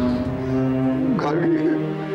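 Dramatic background music: a held chord of steady tones, with a voice heard briefly over it about a second in.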